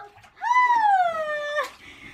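A young child's voice giving one long drawn-out call, rising slightly and then falling in pitch, lasting a little over a second.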